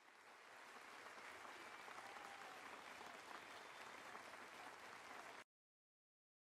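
Near silence: a faint, even hiss that cuts off suddenly near the end.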